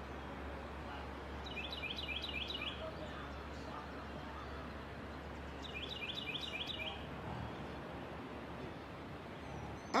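A small songbird singing two short phrases about four seconds apart, each a quick run of repeated high notes, over steady low background noise.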